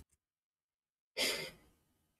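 A single sigh, a breath let out close to the microphone, starting abruptly about a second in and fading away within about half a second, with silence before it.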